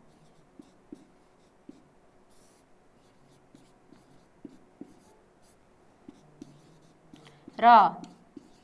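Felt-tip marker writing on a whiteboard: faint, scattered short strokes and light taps as letters are formed.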